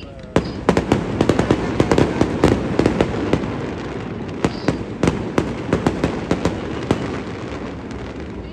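Aerial fireworks going off: a rapid string of sharp cracks and pops that starts about half a second in, is densest over the first few seconds, then thins out toward the end.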